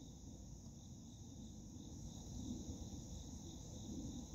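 Faint, steady high-pitched chorus of insects singing, over a low background rumble.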